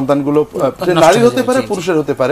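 Only speech: a man talking steadily in a studio.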